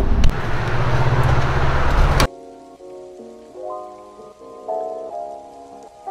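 A loud rushing outdoor noise cuts off suddenly about two seconds in. Quiet, gentle piano-like music follows, its notes getting louder near the end.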